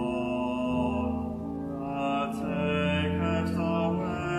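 Church choir singing slow, sustained chords, the voices holding long notes and moving from one chord to the next every second or so.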